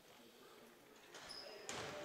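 A basketball bouncing on a gym's hardwood floor during a quiet free throw. Faint crowd and court noise rises from about a second in.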